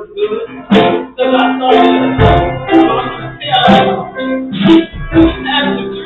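Loud live church music led by guitar, with a voice over it.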